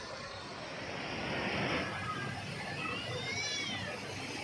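Busy outdoor background noise with a swell of hiss about a second in, and a brief high-pitched cry that rises and falls near the end.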